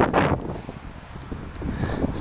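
Wind rushing over the microphone of a camera carried on a moving bicycle, a steady low buffeting that is loudest for a moment at the very start.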